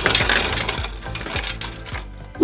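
End-screen sound effect: a run of bright metallic clinks and jingling with ringing, fading toward the end, with music.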